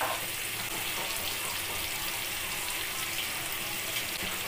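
Boiled elephant foot yam (suran) pieces sizzling steadily in hot oil in a kadhai as they fry with turmeric and salt.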